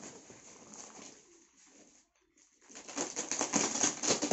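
Woven plastic sacking and packing tape being torn and pulled off a cardboard box, crackling and rustling, with a brief pause about halfway and a dense stretch of tearing near the end.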